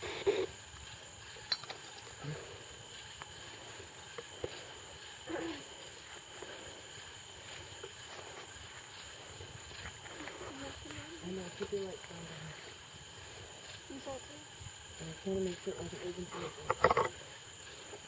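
Steady, high-pitched trilling of crickets, with faint low voices murmuring a few times in the second half.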